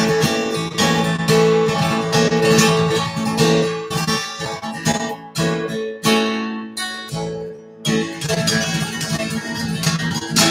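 Steel-string acoustic guitar strummed hard in a flamenco-style pattern: a dense run of chord strokes, with the chord changing several times.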